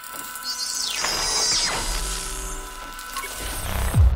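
Outro logo sting of designed sound effects and music: sweeping whooshes and a mechanical, ratchet-like texture over held tones, building to a deep hit at the end.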